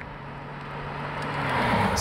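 2018 Holden ZB Commodore driving toward the camera: a steady engine note and tyre noise grow louder as it approaches.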